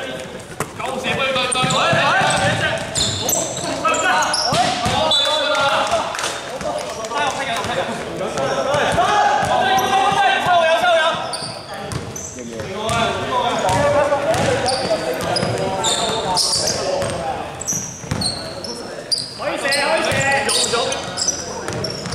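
Basketball bouncing on a hardwood gym floor during play, with players' voices calling out in a large, echoing sports hall.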